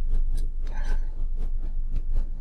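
Light clicks and rustles of a metal extruder mounting plate and its wires being handled, over a steady low hum.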